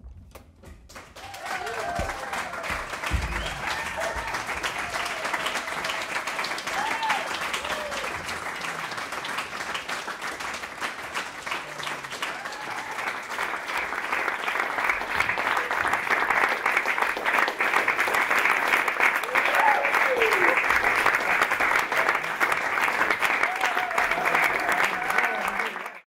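Audience applauding: the clapping starts about a second in and swells louder about halfway through, with a few voices calling out among it.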